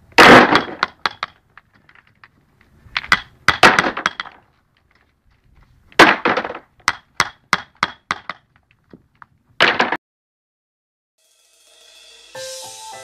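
A hammer striking rounded river pebbles set in sand: sharp knocks with a ringing clink of metal on stone, coming in four bursts of several quick blows, then stopping about two seconds before the end.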